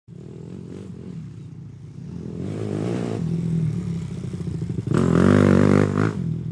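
Motorcycle engine running, with the revs rising around the middle and a sharp, louder rev about five seconds in.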